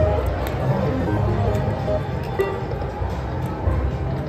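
Goblin's Gold video slot machine playing its electronic music and reel-spin jingles as the reels spin, over steady casino background noise.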